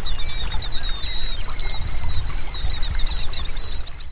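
Birds chirping in quick, repeated high notes over a loud, unsteady low rumble.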